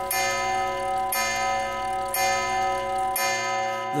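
Cartoon grandfather clock chiming the hour with bell-like strokes about a second apart, each ringing on until the next. These are four strokes of the clock striking five.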